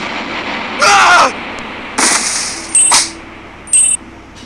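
Cartoon sound effects: a short voice exclamation about a second in, then a rush of noise, a sharp click with a low hum under it, and brief high electronic tones near the end.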